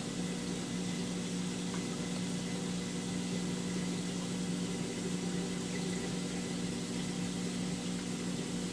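Steady low hum of aquarium pumps and filtration, with an even hiss of circulating water, unchanging throughout.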